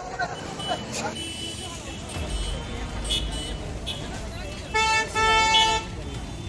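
A vehicle horn honks twice near the end, a short toot followed by a longer one, over people's voices and a low rumble.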